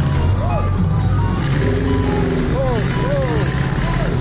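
Engine of a small 4x4 running steadily, with music over it. A few short calls that rise and fall in pitch come through about half a second in and again in the second half.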